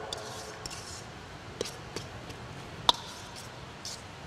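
Hands mixing ground meat in a stainless steel bowl: soft squishing with a few scattered light clicks against the bowl, the sharpest a little under three seconds in.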